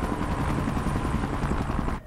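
Steady helicopter noise: a fast, even rotor flutter low down under a broad hiss, with a faint held tone. It cuts off abruptly at the end.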